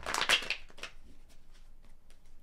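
A deck of tarot cards shuffled by hand: a burst of rapid card flicks in the first half second, then a few lighter flicks.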